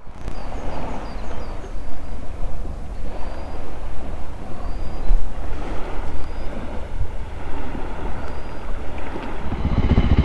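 Wind buffeting the microphone: a rough, gusting rumble that rises and falls. In the last moment it gives way to the Voge 300 Rally's engine idling with a steady pulse.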